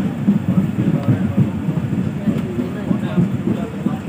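Steady, loud rumble of a moving passenger train heard from inside the carriage, with faint voices underneath.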